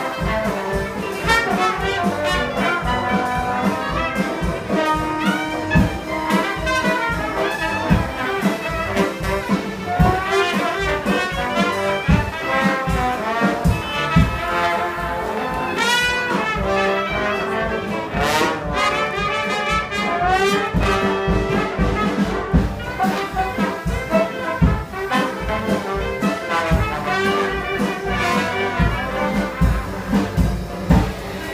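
Traditional jazz band playing live, with brass horns leading over piano, double bass and drums.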